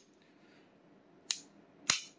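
Two sharp metallic clicks from a Sig P238 pistol's single-action trigger and hammer mechanism as it is dry-fired, with the trigger released to its reset and pulled again. The clicks come about half a second apart, the second louder.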